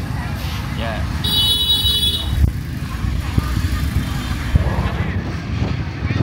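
Busy market background: a steady low rumble with faint voices around it, and a high-pitched steady tone starting about a second in and lasting about a second.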